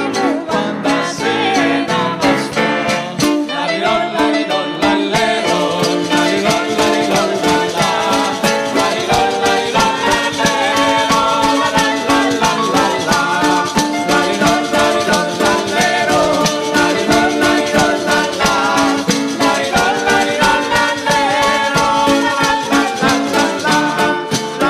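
Live folk music from a small ensemble: a plucked string instrument and keyboard carrying the melody, with a jingling frame drum keeping a steady beat.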